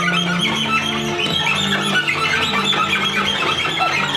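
Cello ensemble playing: a slow line of long low notes under a busy flurry of short, high-pitched notes.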